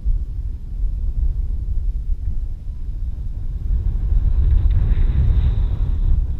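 Wind rushing over the microphone of a camera riding on a flying radio-controlled aircraft: a loud, deep, steady rumble that swells near the end. A faint high whine joins it about four seconds in.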